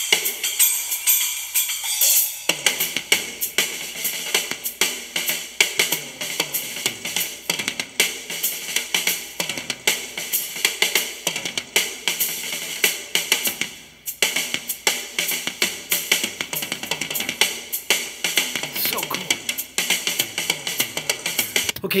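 Live rock drum solo on a full drum kit, playing back from a concert recording: fast, dense strokes across the drums with cymbals ringing over them throughout. It is lighter at first, and the fuller low drum strokes come in about two and a half seconds in.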